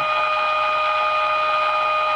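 AM radio's speaker playing the signal generator's audio modulation tone as a steady pitched tone over hiss, while an IF coil is tuned for the strongest tone.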